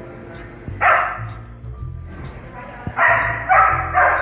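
A large dog, a German Shepherd type, barking: one bark about a second in, then two or three quick barks near the end.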